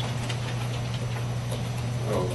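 Room tone in a pause between speakers: a steady low electrical hum with a faint hiss.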